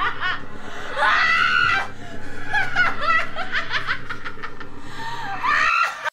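Evil disembodied laughter from the monster in the mirror: a cackling laugh in quick repeated ha-ha pulses that rises to a shrill peak about a second in and again near the end, over a low steady hum. It cuts off abruptly at the very end.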